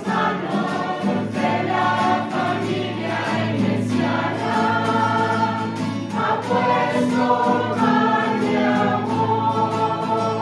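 A mixed choir of women's and men's voices singing a slow religious song together, accompanied by strummed guitars.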